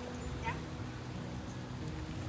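A young shepherd mix dog gives one short, high whine that rises quickly in pitch about half a second in, over a steady low background rumble.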